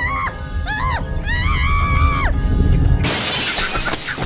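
Cartoon character's high-pitched screams, several rising-and-falling cries with the last held for about a second, over a low rumble; about three seconds in, a sudden loud crash takes over.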